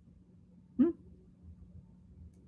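One short, sharp vocal sound a little under a second in, like a single bark or yelp, over quiet room tone.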